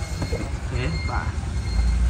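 Low, steady rumble of a Hyundai Starex van's engine idling, picked up from beneath the van by its exhaust, swelling near the end. A voice speaks briefly in the middle.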